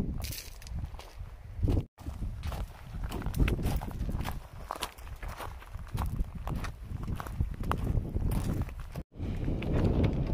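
Footsteps on a loose gravel and limestone trail, many short crunching steps, with the sound dropping out for an instant about two seconds in and again near the end.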